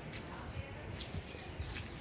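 Quiet outdoor garden ambience: a steady high-pitched hiss with a few faint clicks about a second in and near the end.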